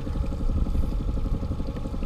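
Boat's outboard motor running steadily at trolling speed, a low pulsing rumble with a faint steady hum.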